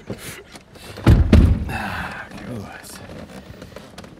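A car door of a 2008 Maserati GranTurismo shutting with one heavy, deep thud about a second in.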